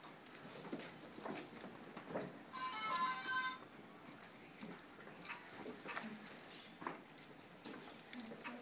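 A LEGO Mindstorms NXT robot's brick speaker plays a short electronic sound of several steady tones, about a second long, starting a few seconds in. Faint clicks and knocks come from the robot being handled on the floor.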